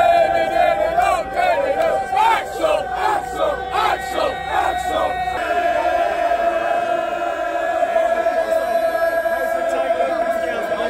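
Large crowd of football supporters chanting loudly in unison: rhythmic chanted phrases for about five seconds, then a long held sung note.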